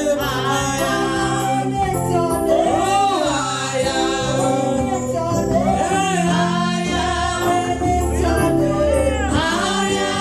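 Live gospel praise-and-worship music: women singing through microphones over a band with a drum kit and a steady, sustained bass line.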